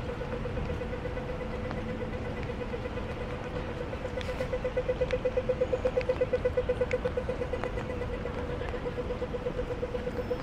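Pedestrian crossing signal sounding a rapid pulsing beep that grows louder about halfway through, then fades a little, over the low hum of city traffic.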